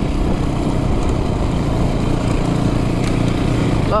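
Yamaha WR426 dirt bike's single-cylinder four-stroke engine running steadily under way on a dirt track, heard from the rider's camera with wind noise over it.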